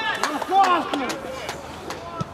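Players' voices calling out on the pitch, with a few short, sharp knocks in between.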